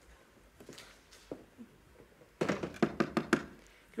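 A quick run of knocks on a door, about half a dozen strikes within a second, coming about two and a half seconds in.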